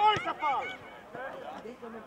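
Several voices shouting at once on a rugby pitch, loudest in the first second, then fainter calls overlapping.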